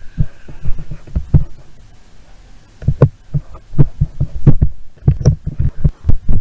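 Irregular dull thumps, many in quick succession, with a quieter pause of about a second before they pick up again more densely.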